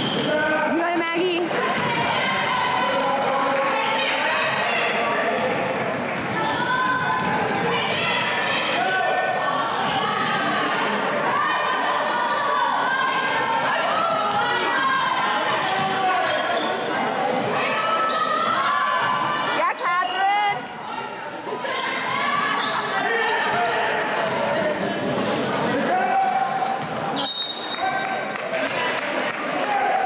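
A basketball bouncing on a hardwood gym floor during play, under the steady chatter and calls of spectators and players in a large gymnasium.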